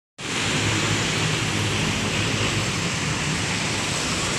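Steady, even roar of street traffic noise with a faint low hum in it, starting abruptly as the sound begins.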